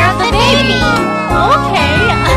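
Children's song: a high, childlike voice singing over steady backing music.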